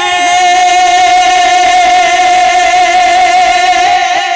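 A man's voice singing a naat, holding one long, steady note through a microphone.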